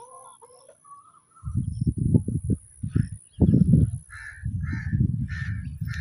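A loud, low rumble on the microphone starts about a second and a half in. In the second half, a few short, evenly spaced bird calls sound over it. Faint chirps come before the rumble.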